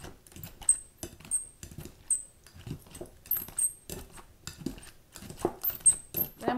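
Metal potato masher pressing fork-tender boiled butternut squash in a glass bowl: soft mashing strokes about one or two a second, several with a light clink of metal against glass.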